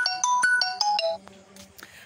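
Mobile phone ringtone: a quick electronic melody of short, clean notes, about five a second, that stops abruptly a little over a second in.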